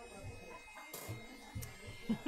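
Faint background noise of a busy shop, with a few soft low thumps. The last of a music track dies away at the very start.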